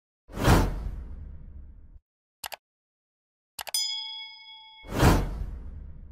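Motion-graphics sound effects: a whoosh, a quick double click, then a few clicks leading into a bright ding that rings for about a second, then another whoosh near the end.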